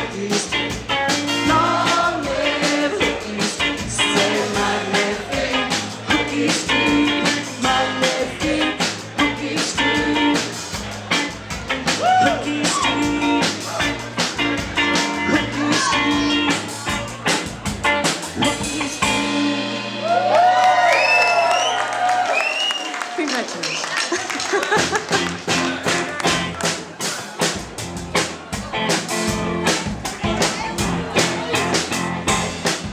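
A live band plays upbeat dance music with a drum kit and singing. About two-thirds in, the drums and low end drop out for a few seconds, leaving high sliding notes, and then the beat comes back in.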